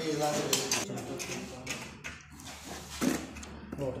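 Scattered light metallic clinks and knocks from handling thin steel drywall profiles and screws, with people talking in the background.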